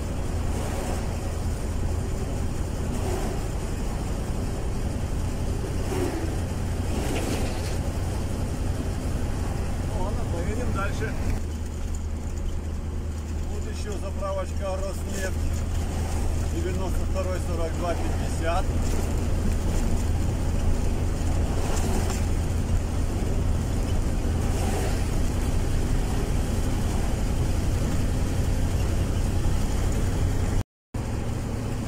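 Steady low rumble of road and engine noise heard inside a moving car's cabin, growing slightly louder past the middle, with faint voices in the middle stretch.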